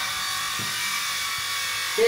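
Marker pen rubbing on a whiteboard in a few faint strokes, under a steady hiss.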